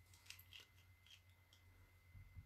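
Near silence, with about five faint small clicks in the first second and a half as a small alcohol ink bottle is picked up and handled.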